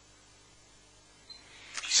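Near silence: a faint steady hiss of background noise, with a small click a little past halfway and a brief rise in noise just before a man's voice begins at the very end.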